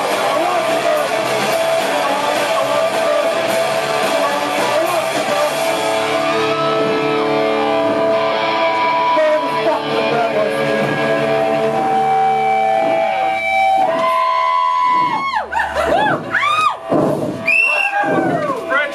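Live rock band with electric guitars and drums playing loudly. About six seconds in the drums drop away, leaving held guitar notes, and in the last few seconds the guitar sound swoops up and down in pitch again and again.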